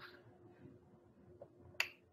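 Faint room noise with a steady low hum, broken by one sharp click near the end.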